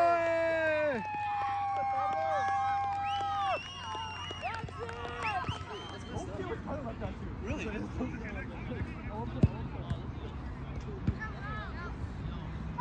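Voices shouting across an outdoor youth soccer game: a loud drawn-out yell and held calls in the first few seconds, then fainter distant calls and chatter from players and spectators, with two sharp knocks late on.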